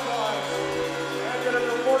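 Arena goal celebration after a home goal: a long, steady, horn-like low chord with music over it.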